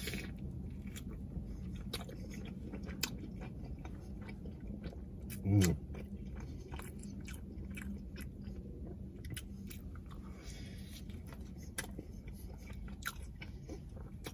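Close-up mouth sounds of chewing naan dipped in a creamy sauce: many small wet clicks and soft crunches of bites and chewing, over a faint steady low hum. A short vocal sound comes a little over five seconds in.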